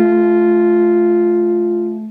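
Two alphorns holding one long note together, the final note of a phrase, fading away near the end.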